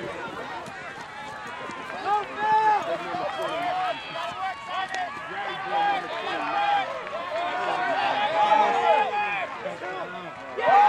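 Several ultimate players on the field and sideline shouting and calling out over one another during a point. The voices build louder toward the end.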